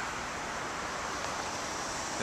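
Steady outdoor background hiss with no distinct events.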